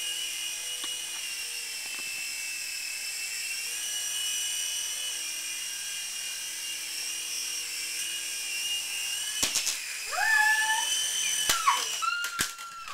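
Small electric RC helicopter's motor and rotors whining steadily, wavering a little in pitch as it flies. In the last two seconds come several sharp knocks and brief sliding tones as it comes down and hits things.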